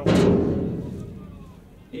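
A sudden heavy thump at the start, dying away over about a second and a half.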